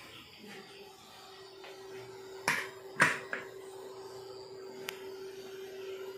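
A steady faint electrical hum at one pitch, with two sharp knocks about two and a half and three seconds in and a light tick near the end.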